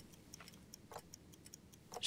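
Faint clock ticking in a quiet room, with quick even ticks at about four a second.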